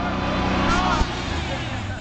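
Ford Bronco II engine running hard under load as the truck, stuck in a mud rut, tries to drive out. A sharp knock comes about a second in, after which the engine note drops lower.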